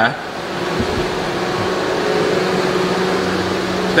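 A car's engine and cooling fan running close by with a steady hum as the car creeps slowly into a tight parking space. The hum grows a little louder over the first second or two, then holds.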